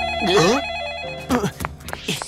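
Telephone ringing with a steady electronic ring that stops about a second in, followed by a few sharp clicks. A short voiced exclamation sounds over the ring near the start.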